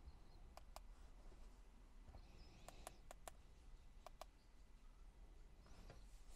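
Faint, sharp clicks of a handheld car diagnostic scan tool's buttons being pressed: a pair about half a second in, four quick ones around the three-second mark, and another pair about a second later. Beneath them is only a faint low hum.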